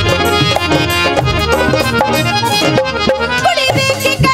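Live Punjabi folk music, an instrumental passage: a reedy, accordion-like melody on an electronic keyboard over a steady beat.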